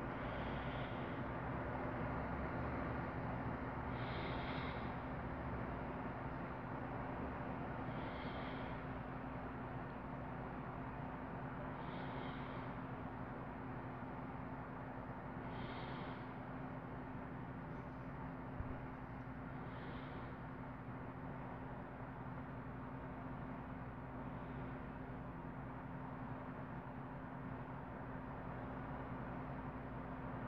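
Steady background hum, with a faint short high-pitched chirp repeating about every four seconds.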